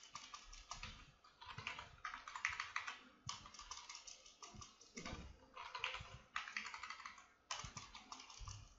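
Computer keyboard typing in short bursts of rapid keystrokes with brief pauses between them, as a word is deleted and retyped on one line after another.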